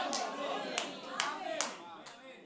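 About four sharp handclaps, irregularly spaced, from the congregation over low murmuring voices in a hall.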